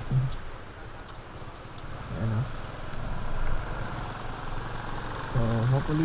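Honda XRM125 Fi motorcycle's single-cylinder four-stroke engine running under way, with a steady rush of road and wind noise heard from a camera on the moving bike. A voice comes in near the end.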